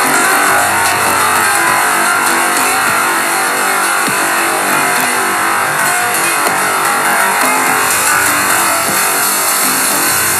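Electronic synth music from iPad synth apps: a dense, steady synth texture at an even loudness, with no clear beat.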